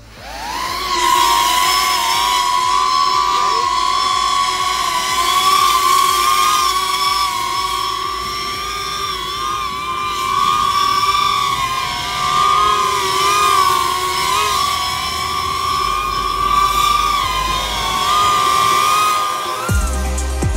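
An FPV drone's motors and propellers spool up and lift off, then hold a loud, steady multi-tone whine that rises and dips a little in pitch as it manoeuvres. The pitch climbs quickly in the first second and sags briefly near the end.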